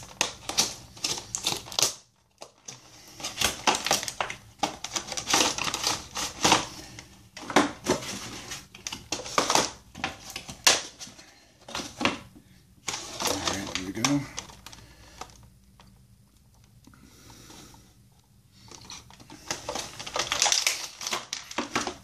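Action-figure packaging being handled and opened: a cardboard window box and its clear plastic blister tray give a run of irregular crinkles, rustles and clicks. It pauses briefly about two seconds in, and it drops for a few seconds past the middle.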